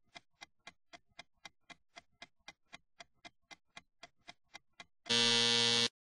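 Stopwatch ticking sound effect, sharp even ticks at about four a second counting down a memory-game timer. About five seconds in, a loud timer buzzer sounds for under a second to signal that time is up.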